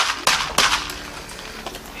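Plastic candy wrapper being torn open and crinkled in the hands: a few sharp crackles in the first half second or so, then softer rustling.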